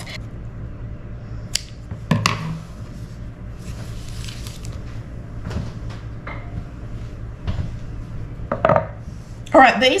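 Scattered kitchen handling noises: a few light clicks and knocks, a fuller knock about two seconds in, over a steady low hum.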